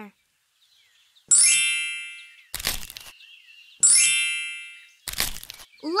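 Cartoon sound effects: a bright, ringing chime that fades over about a second, then a short crunch of dry leaves. The chime-and-crunch pair comes twice.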